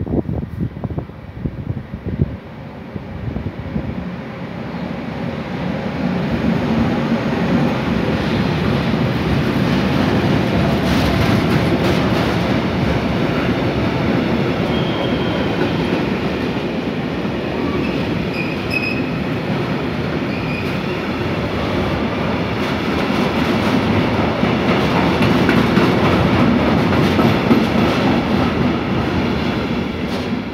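DB Class 185 (Bombardier TRAXX) electric locomotive and a mixed freight train passing at speed. The rumble of wheels on rails builds over the first few seconds as the locomotive arrives, then the wagons roll by in a long steady clickety-clack, with a few brief faint wheel squeals in the middle.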